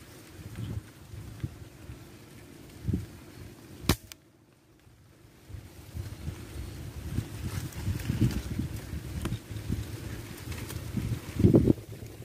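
A single air-rifle shot, a sharp crack about four seconds in, after which the sound drops away for a second or so. Low rumbling handling and wind noise on the microphone fills the rest.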